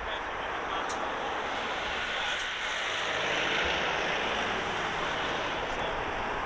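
Jet noise from the four engines of a Boeing KC-135 Stratotanker as it touches down and rolls out on the runway, a steady rush that swells to its loudest about halfway through.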